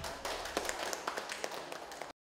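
A small group applauding: many quick, overlapping hand claps, fairly quiet.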